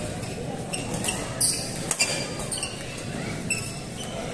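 Badminton rally: a few sharp racket hits on the shuttlecock and short squeaks of court shoes on the floor, over the steady murmur of a large hall.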